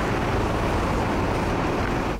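Steady urban traffic noise: a continuous rumble and hiss of passing road traffic.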